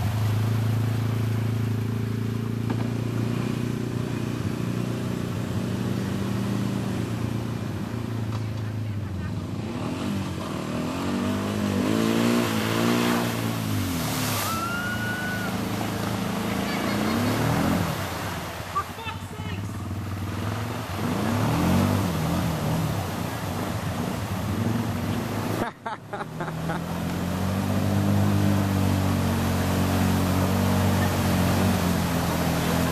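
ATV (quad) engines running and revving while driving through a deep mud puddle, the engine pitch rising and falling several times. After a short break near the end, a bogged-down quad's engine runs hard as its wheels spin in the water and throw mud.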